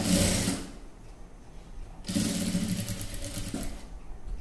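Industrial sewing machine stitching through dress fabric in two runs: a short burst at the start, then a longer steady run from about halfway to near the end.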